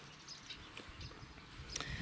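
Faint outdoor background noise with a low rumble and no distinct event.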